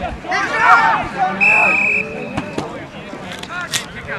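Voices of players and spectators shouting, with a referee's whistle giving one short, steady blast about a second and a half in.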